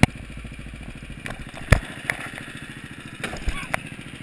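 Go-kart's small engine running steadily as the kart drives around the track, heard from the driver's seat with wind buffeting the microphone. A few sharp knocks cut in, the loudest a little under two seconds in.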